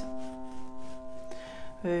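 Notes held down on a Yamaha upright piano ringing on and slowly dying away, with a light click about a second and a half in.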